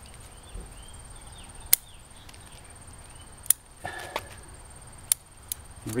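Bonsai scissors snipping elm twigs and leaves: sharp single snips about a second and a half apart, four in all, the last two close together near the end.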